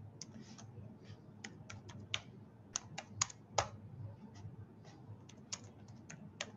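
Typing on a computer keyboard: about fifteen irregular keystroke clicks, the loudest a little past halfway, over a low hum.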